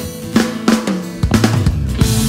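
Pop-rock band music with no singing: a drum-kit fill of bass drum and snare strikes over sustained chords, with the bass guitar and full band coming in a little past halfway.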